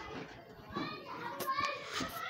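Background voices, children's among them, talking and playing, with a sharp click late on.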